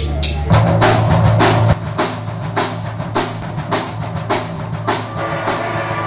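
Live punk rock band playing: a drum kit keeps a steady beat with bass drum and snare, under electric guitars and bass. A held low note gives way to the beat about half a second in.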